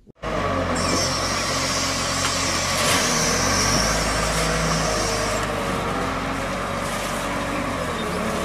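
Volvo wheel loader's diesel engine running steadily under load as it raises its bucket to load a dump trailer, with a high whine over it that fades out about five seconds in.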